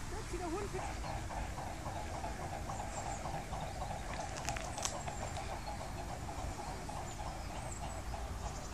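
A dog whining in a rapid, continuous run of short cries, about five a second. It is whining because it is being kept out of the water.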